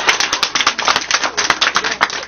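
Scattered, irregular hand claps from a group of men, several a second.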